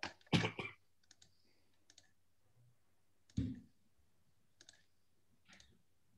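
Computer clicks picked up over a video-call microphone. A loud cluster comes about half a second in and another about three and a half seconds in, with a few faint ticks between.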